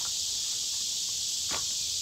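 A steady, high-pitched chorus of insects, with a single wooden knock about one and a half seconds in as a split piece of firewood is set onto the woodpile.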